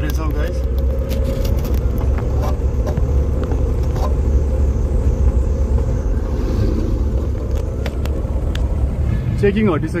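Steady low rumble of a Tata car's engine and road noise, heard from inside the cabin while driving.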